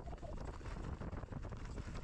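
Wind buffeting the microphone over the rattle of a Commencal mountain bike descending fast on loose rock, with a steady stream of small knocks and clatters from the tyres and frame hitting stones.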